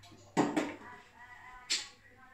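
Two brief knocks from items being handled on a bathroom sink counter. The first, about a third of a second in, has a short ringing tail; the second, near the end, is shorter and sharper.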